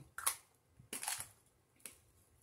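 A few brief, quiet noisy sounds and a light click as aerosol air freshener cans are handled.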